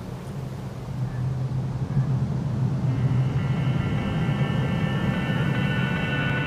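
A low, steady rumble that swells over the first two seconds, with sustained high tones joining it about halfway through.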